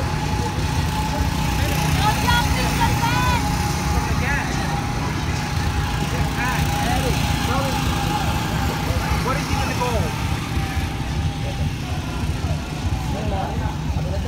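Small go-kart engines running as several karts drive round the track, a steady engine drone, with voices calling out in the background.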